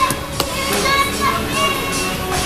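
A toddler's high-pitched vocalising, with background music playing and a sharp tap against the table about half a second in.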